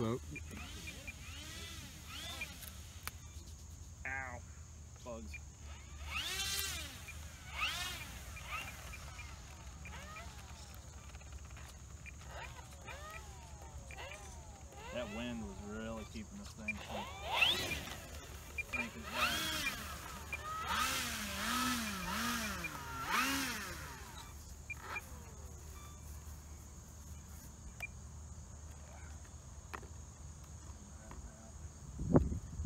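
Electric motor and propeller of an E-flite Draco RC plane revving up and down in short sweeps as it taxis on the ground, loudest in a cluster of revs in the second half. A steady high insect drone and wind rumble run underneath.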